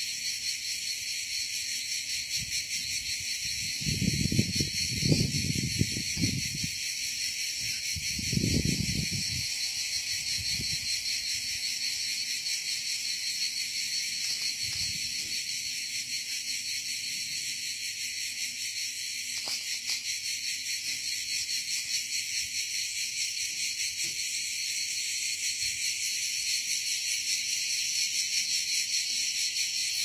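Dense, steady chorus of crickets, a high, finely pulsing shrill that carries on without a break. Two brief low rumbles stand out a few seconds in and again around eight seconds in.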